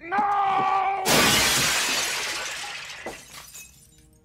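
A man yells briefly, then a glass display case holding model starships shatters about a second in, the crash of breaking glass fading away over the next two seconds with a few last pieces clinking.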